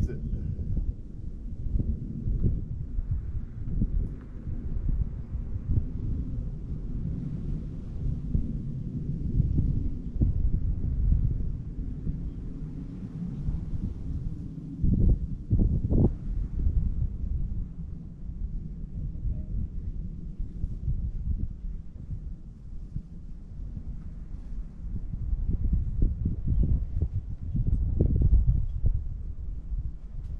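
Wind buffeting the microphone: an uneven low rumble that swells and fades, with a couple of short bumps about halfway through.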